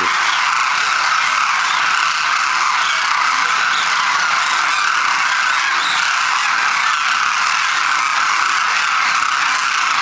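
A huge flock of demoiselle cranes calling all at once: a loud, steady din of many overlapping calls that blend into one continuous chorus.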